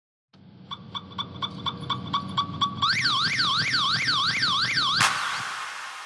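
Electronic car alarm fading in: a run of short beeps about four a second, then from about three seconds a fast up-and-down siren yelp, over a low rumble. About five seconds in a burst of noise cuts the siren off and fades away.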